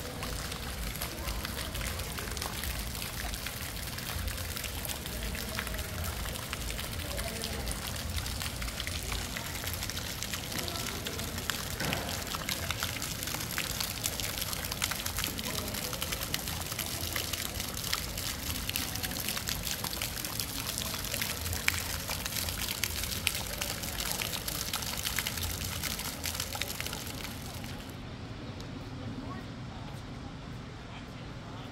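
Water trickling and pattering steadily, a dense hiss of small splashes, with a low murmur of voices underneath; the water sound cuts off suddenly near the end.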